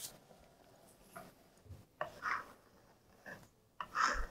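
Square-notch trowel scraping across wet epoxy on a board, a few faint, separate scrapes and rubs.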